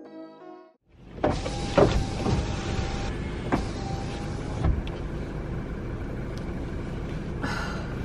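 End of background music for the first second, then a steady rushing noise inside a parked car's cabin, with several sharp clicks and knocks over the next few seconds as someone moves about in the driver's seat.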